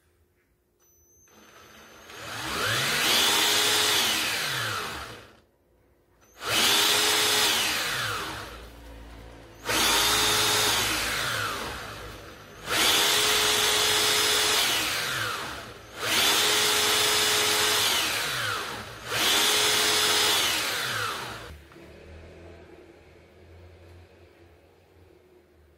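Cordless drill mounted on a bicycle frame as a drive motor, switched on six times in bursts of two to three seconds. Each time its whine rises to a steady pitch, then falls away as it coasts down.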